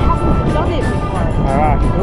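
Wind buffeting the microphone in a low, uneven rumble, with voices over background music.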